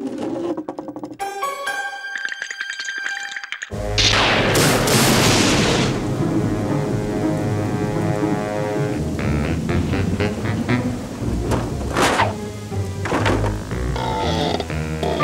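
Cartoon soundtrack music, broken about four seconds in by a sudden loud thunderclap that rolls away into rain noise under the music. There are two sharp cracks near the end.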